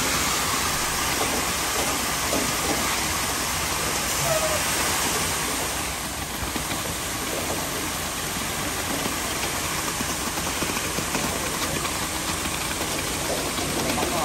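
Wet concrete running down a concrete mixer truck's chute into a footing trench, with the truck running: a steady rushing hiss.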